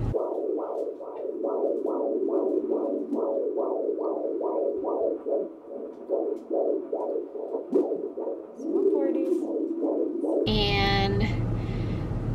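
Fetal heartbeat picked up by a handheld Doppler probe on the belly of a woman 24 weeks pregnant: a fast, even pulse at about two and a half beats a second, a heart rate of about 140 that she reports as good. About halfway through, the beat turns faint and uneven.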